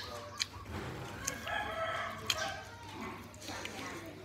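A rooster crowing once, a single drawn-out call of about a second and a half, with a few sharp clicks around it.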